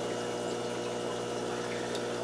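Aquarium pump humming steadily.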